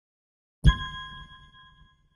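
A logo chime: one bright ding struck about half a second in, with a low thud under it, ringing out and fading over about a second and a half.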